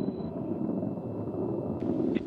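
Low, steady rumble of a Soyuz-2.1a rocket's first stage in powered flight: four strap-on boosters and the core engine burning together as it climbs, heard from far off.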